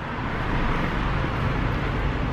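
Steady road traffic noise from cars on a city street: an even rumble with no distinct events.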